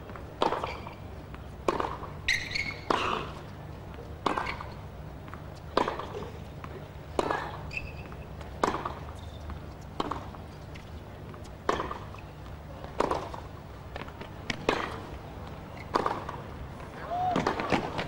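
Tennis rally: a ball struck back and forth by rackets, one sharp pop about every second and a half, over a low steady hum.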